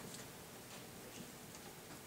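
Quiet classroom room tone with a few faint, irregularly spaced small clicks and taps.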